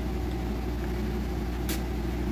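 Steady low background hum, like a motor or appliance running, with one brief click near the end.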